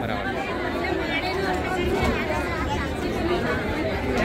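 Several people talking at once, overlapping chatter with no single voice standing out.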